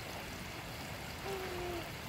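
Steady rushing of moving water, with a short low murmured hum from a person about one and a half seconds in.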